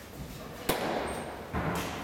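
A pitched softball smacking once into a catcher's mitt, a sharp single impact. A man's voice follows near the end.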